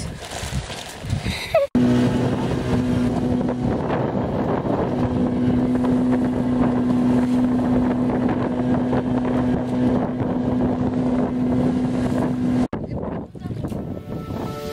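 Boat motor running at a steady pitch while under way, with water rushing and splashing past the wooden hull; the hum stops abruptly near the end.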